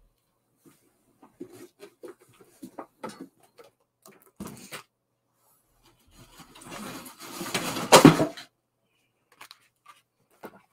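Handling noises: a scatter of small knocks and clicks, then a rustling that builds to a loud burst about eight seconds in.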